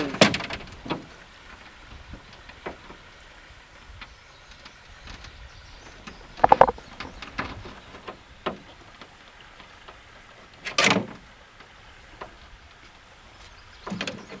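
A few scattered knocks and clunks of gear against an aluminum jon boat as fiber dip bait is worked onto a hook with a stick in a bucket: a ringing metallic clunk about six seconds in and a louder knock near eleven seconds.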